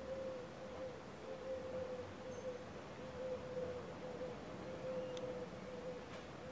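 A steady hum on one pitch that wavers slightly, over a faint background hiss.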